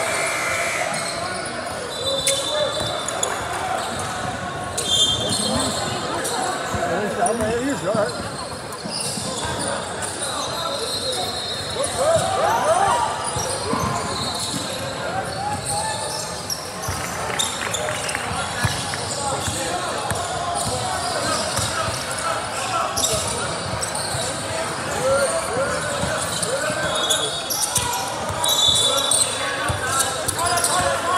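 Basketball game on a hardwood gym court: the ball bouncing, sneakers giving short high squeaks, and players and spectators calling out, all echoing in a large hall.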